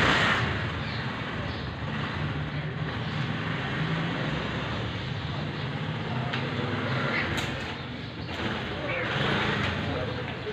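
Street background noise: a steady low engine hum with voices over it, louder for a moment at the start.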